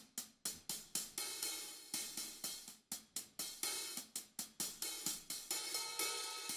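Sampled hi-hat from Logic Pro X's Drum Kit Designer played in a steady run of about four hits a second. The mod wheel crossfades it from short, closed ticks into longer-ringing open hi-hat, with a long ring near the end.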